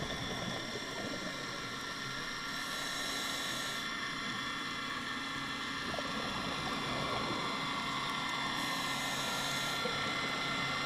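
Steady drone of a boat motor heard through the water, a set of constant tones that does not change. Two short hisses of a diver's scuba regulator breath come about two and a half seconds in and near the end.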